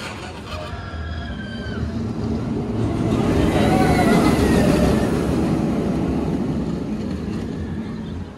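Steel roller coaster train, SeaWorld San Diego's Manta, running along the track overhead: a rumble that builds over a couple of seconds, peaks around the middle, then slowly fades.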